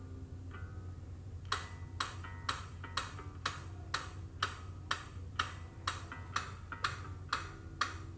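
Steady clock-like ticking, about two ticks a second, starting about a second and a half in, over a low hum and faint held notes.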